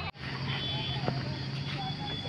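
Open-air ambience: distant children's voices over a low steady hum, after a brief gap just after the start.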